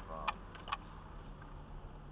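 Low steady rumble of a car's engine and tyres heard from inside the cabin while rolling slowly, with two short sharp clicks in the first second.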